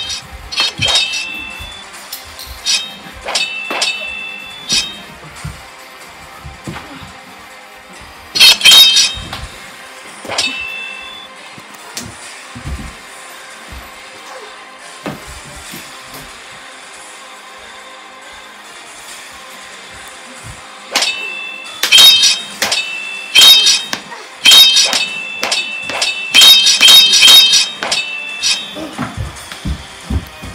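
Sharp metallic clangs over a music bed, each clang ringing at the same high pitches. A few come in the first five seconds and a loud pair follows around nine to eleven seconds. A dense, loud flurry runs from about twenty-one seconds to near the end.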